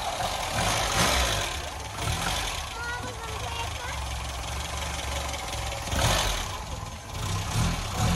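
FSO 125p 1500's overhead-valve four-cylinder engine idling steadily just after being started, heard close up over the open engine bay.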